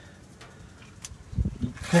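Mostly quiet pause with a couple of faint clicks and a brief low rumble of phone handling noise past the middle, then a man's voice starts right at the end.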